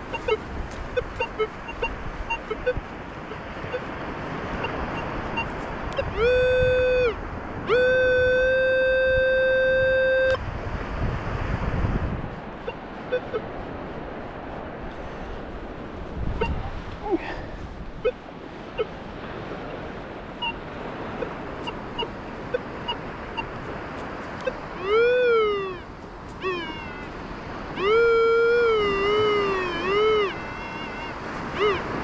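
Minelab Vanquish metal detector target tones. Short blips come early. Then a tone rises into a steady held note for about a second and again for two or three seconds, stopping abruptly. Near the end come rising-and-falling warbling signals as the coil is swept over a target. A steady background hiss runs underneath.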